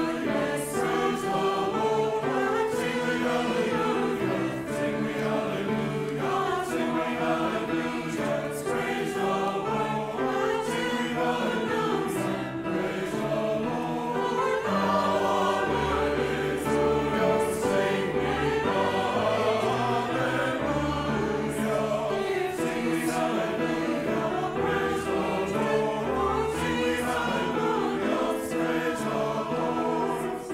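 Mixed church choir singing an anthem in harmony, accompanied on a digital piano; deep bass notes join about halfway through.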